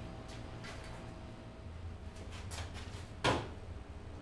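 Light knocks and handling noise of a cut metal chassis tube being set against a car's front end, with one sharp, louder knock a little past three seconds in, over a steady low hum.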